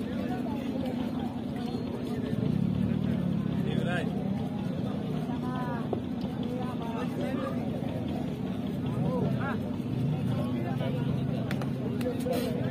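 Spectators' voices, with scattered calls and shouts, over a steady low drone.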